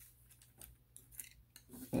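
A few faint, scattered plastic clicks and taps from a Transformers Wheeljack action figure being handled as its legs are moved at the hip joints.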